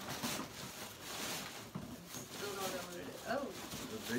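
Crinkly rustling of a gift bag being handled as a boxed present is pulled out of it, followed by a few quiet spoken words in the second half.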